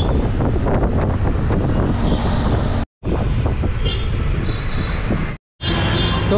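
City bus running along a road, heard from inside: engine rumble and road noise, briefly cut off twice where the footage is edited.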